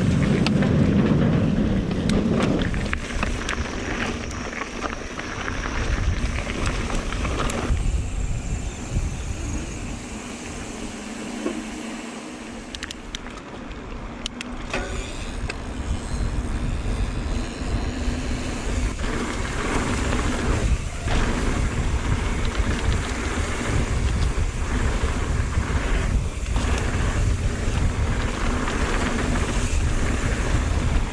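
Mountain bike being ridden, heard from a camera mounted on the rider: steady rolling tyre noise and wind rushing over the microphone, with a deep rumble. It gets quieter for a few seconds about a third of the way in, with a few sharp clicks.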